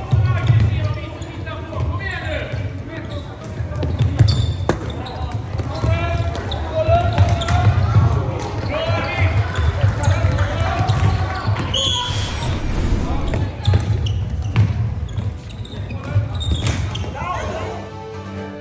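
Live floorball play in a sports hall: sticks and the plastic ball clacking, thudding footsteps on the hall floor, and players and spectators shouting, with hall echo.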